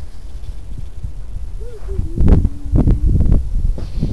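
Wind buffeting the microphone in low gusts, with a few faint goose honks from about two seconds in.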